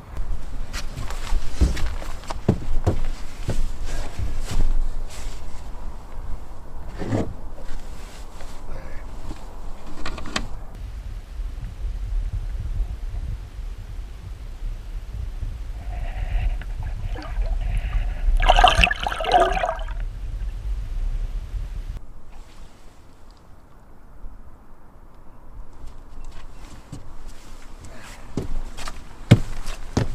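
River water sloshing and trickling around a caught muskellunge held in the water for release, over a low rumble of water against the camera. One louder burst of sound comes just past the middle, and the rumble drops away near the end.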